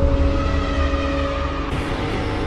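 Cinematic intro sound design: a deep, steady rumble with held tones over it, and a brighter hiss coming in near the end.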